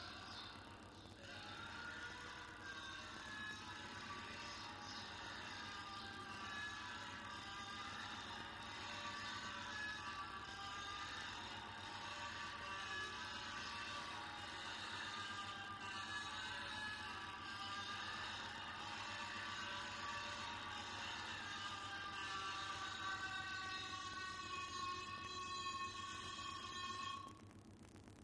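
Soundtrack of a projected performance video playing through loudspeakers: layered, music-like sustained tones over a low hum, cutting off suddenly near the end.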